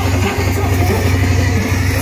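Loud live music over a festival stage PA, heard from inside the crowd, with a heavy deep bass.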